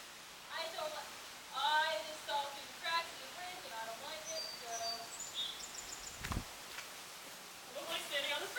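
A person's faint wordless voice sounds on and off, then a single heavy thump about six seconds in, a person's feet landing on the wooden plank deck of a covered bridge after jumping down from the wall truss.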